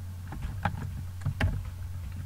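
Steady low electrical hum on the recording, with a few short clicks about half a second in and again near one and a half seconds from working the computer.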